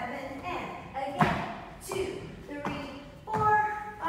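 A voice speaking in short phrases, with a single sharp thump about a second in: a dancer's foot striking the wooden studio floor.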